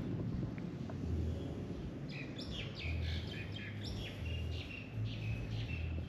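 Birds chirping: a quick run of short, high calls starting about two seconds in, with low thumps about once a second underneath.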